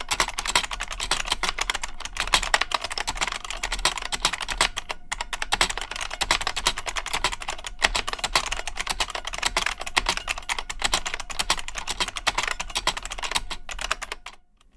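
Fast, continuous typing on an IBM Model M keyboard's membrane buckling-spring switches: a dense stream of key strokes with two brief pauses, about five and eight seconds in. The typing sound is thocky and bassy, with the pingy spring component characteristic of buckling springs.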